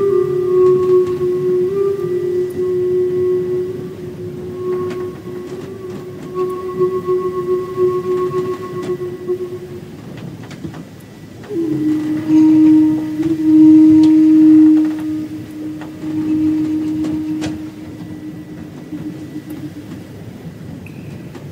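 Zen flute playing two long held notes: the first is sustained for about ten seconds, and after a short breath a lower note swells in and is held to the end. Beneath it runs a steady low hiss with a few faint clicks.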